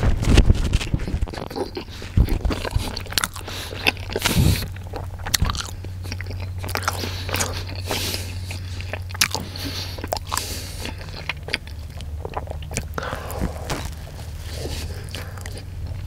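Close-miked chewing of a Subway sub sandwich, with many wet mouth clicks and soft crunches. The loudest bite and chew comes in the first second, over a low steady hum.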